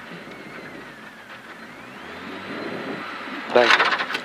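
Renault Clio R3C rally car's four-cylinder engine idling, heard from inside the cabin while the car waits at a stage start, the sound swelling gradually in the second half. A voice says "dai" near the end.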